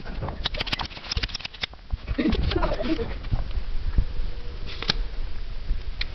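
People laughing softly between runs of quick, sharp clicks and taps: a dense string in the first second and a half and a few more near the end.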